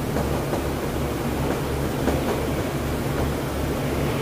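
Steady low electrical hum with an even hiss, the background noise of a small room, with faint strokes of a marker writing on a whiteboard.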